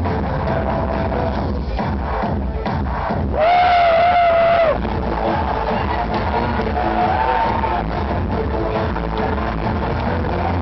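Live industrial/EBM dance music played loud over a club PA, with a heavy low beat. A loud held high note comes in about three and a half seconds in and lasts just over a second, and a shorter one follows a few seconds later.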